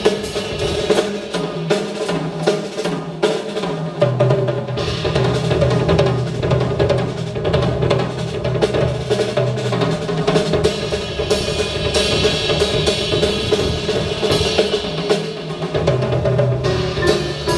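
Live jazz played on acoustic instruments: a drum kit's cymbals, snare and bass drum to the fore, over grand piano and upright bass.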